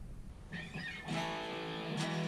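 Electric guitar being played: after a faint start, held notes ring out steadily from about a second in.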